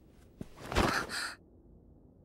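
A short breathy gasp, under a second long, starting a little after half a second in, with a faint click just before it.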